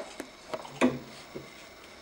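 A few faint clicks and taps of a hand handling a 3D printer's toothed drive belt and frame, with a slightly stronger knock just under a second in.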